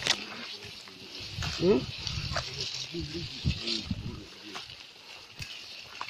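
Low, muffled men's voices and grunts in short fragments, one rising in pitch, among the rustle and sharp cracks of dense brush being pushed through, over a steady high hiss.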